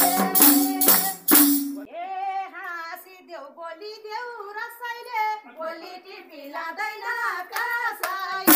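Madal hand drum beating a steady rhythm with a jingling shaker. The drumming stops about two seconds in, and women's voices carry on singing a Bhailo folk song unaccompanied.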